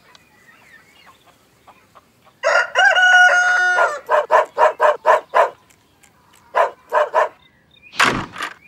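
Rooster crowing once, a long call of about a second and a half that starts about two and a half seconds in, followed by a run of short, quick calls and, after a pause, three more.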